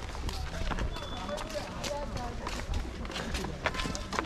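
Footsteps on a path strewn with dry leaves, irregular scuffs and crackles while walking, with faint voices in the background.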